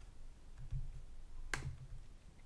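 A single sharp computer mouse click about one and a half seconds in, over a faint low rumble of room tone.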